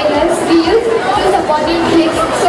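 Crowd babble in a large hall: many people talking at once, their voices overlapping into a steady, indistinct chatter.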